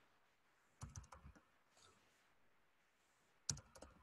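Faint typing on a computer keyboard: a quick run of keystrokes about a second in and another short run near the end.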